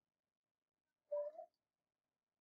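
A cat's single short meow, about half a second long, a little over a second in.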